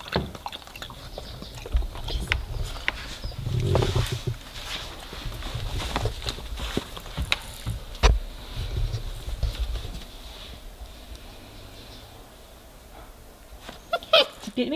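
Puppy lapping water from a bowl: a run of small, irregular wet clicks. Then he moves about in the crate, with one sharp knock about eight seconds in.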